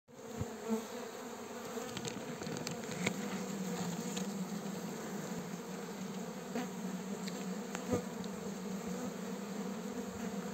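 Uruçu amarela stingless bees buzzing at an opened hive box, a steady hum from many bees of a strong colony, with a few faint clicks.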